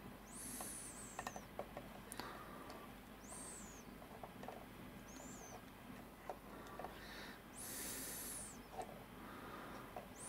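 Small clicks and taps of crocodile clips and wires being handled, with faint high whistling squeaks that come back every two to three seconds.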